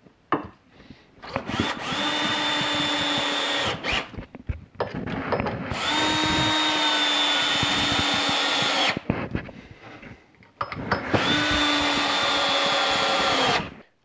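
DeWalt DW927 12-volt cordless drill driving 3-inch screws into two stacked 2x6 boards, in three runs of two to three seconds each with short pauses between, the motor whine steady in each run. It is running on a rebuilt lithium iron phosphate battery pack under its first load test.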